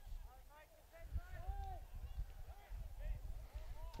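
Faint, distant shouts of soccer players calling to one another across the field, several short calls, over a steady low rumble.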